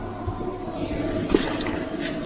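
Butter and oil sizzling under a naan bread frying in a lidded pan, a steady hiss over a low hum; the hiss grows brighter about a second in.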